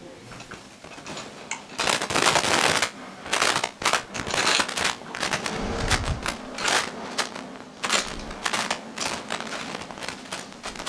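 Metal head bolts clicking and clattering against the head of a Series G diaphragm pump as the head is fitted and the bolts are set in by hand: quick, irregular runs of sharp clicks, with a dull knock about six seconds in.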